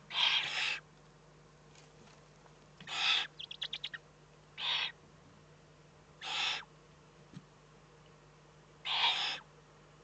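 Eurasian eagle-owl owlets giving rasping, hissing begging calls, five half-second hisses a second or two apart. A quick run of short clicks follows the second hiss.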